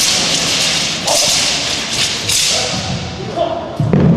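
Chinese broadsword (dao) swishing through the air in fast cuts, in three long sweeps, with heavy thuds of feet on the carpeted floor near the end.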